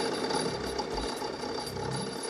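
Fishing-boat machinery running steadily: a hum with a thin high-pitched whine over it and a few faint clicks.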